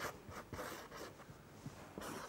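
Felt-tip marker drawing on a sheet of paper: faint, irregular strokes.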